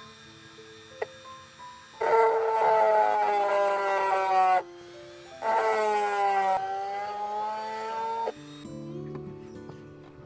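A small pen-style electric rotary tool runs twice against a coconut-shell box, starting about two seconds in and again about five and a half seconds in. Each run is a steady whine of a few seconds that falls a little in pitch. Soft background music plays throughout.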